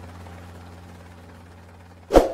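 A steady low droning hum with a light hiss, slowly fading.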